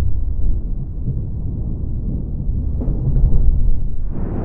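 Low, noisy drone from the closing-credits soundtrack, growing louder near the end as a swell begins.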